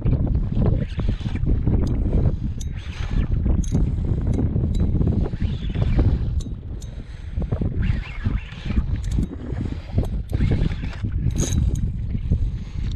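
Wind buffeting the microphone in uneven gusts, a loud low rumble that swells and fades, with scattered light sharp clicks.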